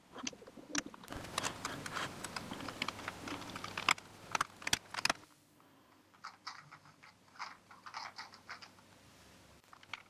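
LEGO plastic pieces being handled and pressed together: a run of small clicks and rattles, busy with a rustling clatter for the first few seconds, then sparser single clicks.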